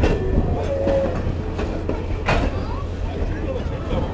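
Railroad passenger train rolling along the track: a steady low rumble with clanks, one as it begins and another about two seconds in, and a short squeal about a second in.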